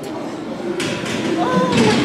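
Indistinct men's voices over gym background noise, with a short hiss about a second in.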